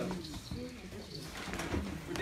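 Faint, low human voices in a room, with a short held vocal tone about half a second in, quieter than the talk on either side.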